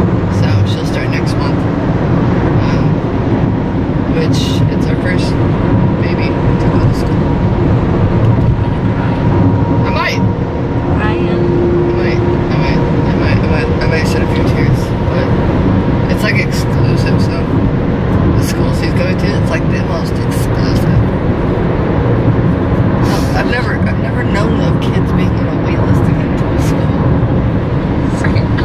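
Steady road and wind noise inside a car cruising at highway speed, with people talking over it.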